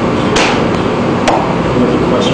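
Two sharp knocks about a second apart over a steady background hiss, the first the louder.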